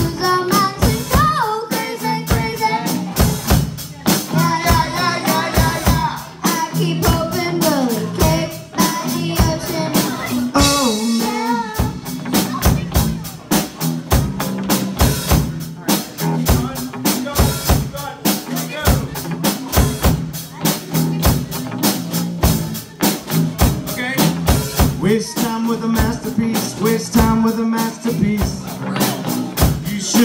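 Live rock band playing a song: an acoustic drum kit keeping a steady beat, with electric bass and electric guitar, and a young singer singing over them.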